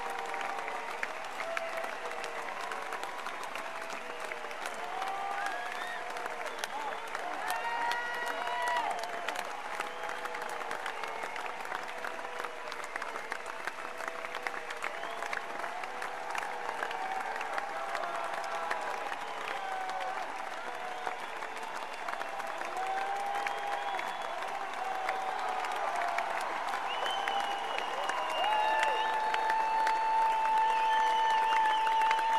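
Large concert audience applauding, with many voices calling out from the crowd. A steady held tone joins in near the end.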